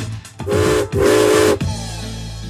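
Steam locomotive whistle, voicing the toy Thomas engine: two short blasts of about half a second each, each a chord of several steady notes with a hiss. A steady background music note comes in near the end.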